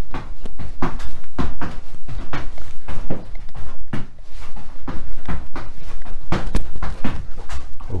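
Trainers landing in quick repeated sideways skips on an exercise mat over a wooden floor, about three to four thuds a second.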